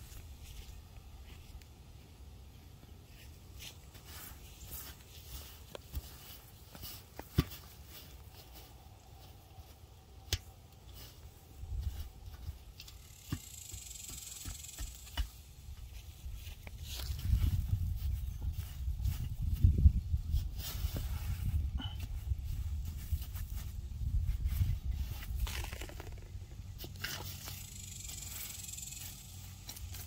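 Scattered scrapes, knocks and footsteps as a covered in-ground barbacoa pit is being uncovered. A low rumble comes in from a little past the middle and fades before the end.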